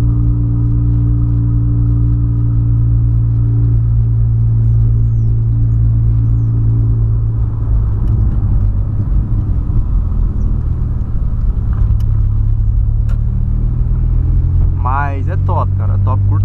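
Volkswagen Polo sedan's engine and exhaust droning steadily while the car is driven, heard from inside the cabin. About halfway through the note turns rougher and unsteady.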